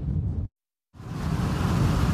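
Strong Santa Ana wind roaring around a car travelling at highway speed, blended with tyre and road noise, a loud and steady rush. It follows a half second of low wind rumble and a brief cut to silence.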